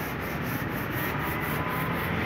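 Quick, even rubbing strokes, about four a second, of a hand-held pad worked over a car door panel, over a steady low background rumble.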